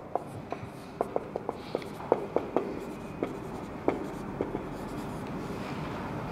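Marker pen writing on a whiteboard: a quick run of short taps and squeaks as the letters are stroked on, stopping about four and a half seconds in.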